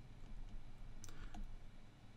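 Faint clicks and light scratches of a stylus writing on a tablet screen, with a couple of sharper taps about a second in.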